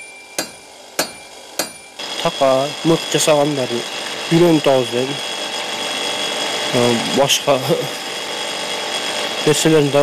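Hammer blows on red-hot iron at a blacksmith's anvil: three sharp, ringing strikes a little over half a second apart, in the first two seconds. The iron is being hammered into shape while hot.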